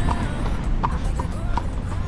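Shod horse's hooves clip-clopping on an asphalt street, a few hoof strikes heard over a steady low rumble of street noise.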